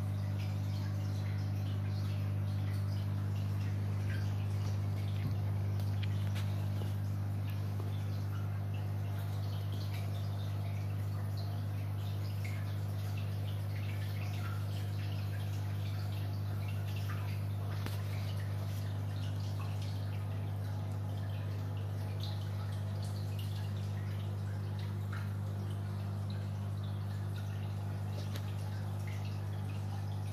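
Aquarium filter running: a steady low hum with water trickling and dripping into the tank as a patter of small irregular drips.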